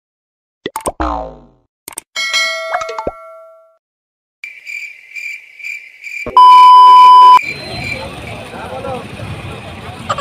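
A string of edited-in cartoon sound effects: a falling boing about a second in, a ringing ding, a pulsing high beep from about halfway, then a loud steady beep lasting about a second. After the beep come street noise and voices.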